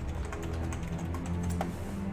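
Typing on a computer keyboard: a quick run of key clicks, over background music with a steady low bass line.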